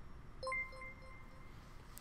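A livestream raid alert chime: one bright ringing tone starting sharply about half a second in and fading away over about a second.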